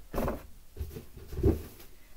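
Objects being handled and moved about: two short bumps with some rustling, the louder one about a second and a half in.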